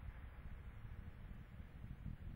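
Faint background noise: an uneven low rumble with a light hiss.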